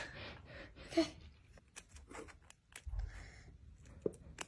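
Faint scattered clicks and light crackles of a fingertip picking at the cracked shell of a hen's egg, with a soft low bump about three seconds in.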